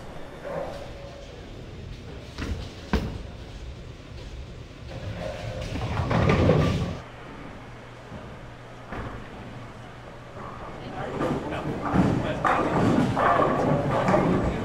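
Bowling alley sounds: a sharp thud a few seconds in, then a bowling ball's rolling rumble that builds and ends in a crash of pins about seven seconds in, with crowd chatter rising near the end.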